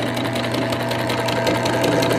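Vintage metal Betsy Ross toy sewing machine running steadily on its electric motor and belt drive: a constant motor hum under a rapid, even clatter of the needle mechanism.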